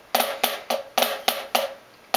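Drumsticks striking a practice pad in two left-handed Swiss triplets (a flam on the first note, then left, right): six even strokes about a quarter second apart, each with a short ring, then a pause near the end.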